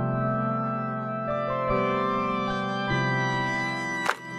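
Background music: slow, held keyboard chords that change every second or so.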